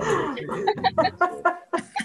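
Person laughing in a run of short, quick bursts.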